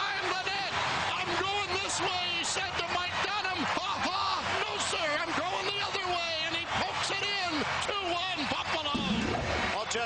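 Continuous speech: a hockey play-by-play commentator's voice, with nothing else standing out.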